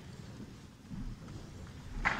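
Low, uneven rumble of background noise in a concert hall, with no music playing.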